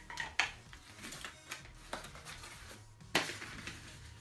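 A small cardboard box being cut and pried open with a knife: scraping and rustling of cardboard, with a sharp knock near the start and a louder one about three seconds in.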